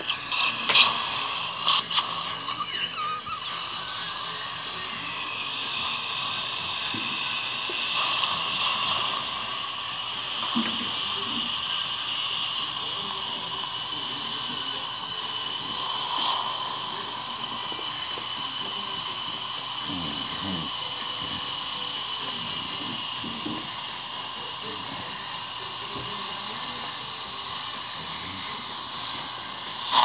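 Dental suction running with a steady hiss and a high whistling tone, with a few sharp clicks in the first seconds.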